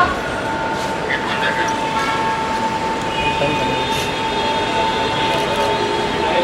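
A steady, unbroken electronic tone, one pitch held for several seconds, over a noisy hall background with faint voices.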